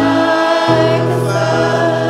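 Live church worship music: a band holds sustained chords while several voices sing, with a chord change in the bass about two-thirds of a second in.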